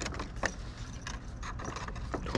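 Clear plastic packaging crinkling and rustling as it is handled, with a few sharp clicks, the clearest about half a second in.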